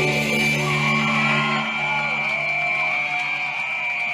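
A live band's last chord ringing out as the song ends, its low note stopping a bit under two seconds in, while the audience cheers and whoops. A steady high tone hangs over it throughout.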